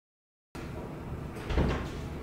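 Dead silence for the first half second, then low room tone and an interior door opening with a short thump about a second and a half in.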